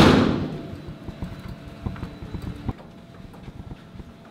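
A loud bang at the start that rings out for about a second, followed by a run of soft footsteps that stop almost three seconds in.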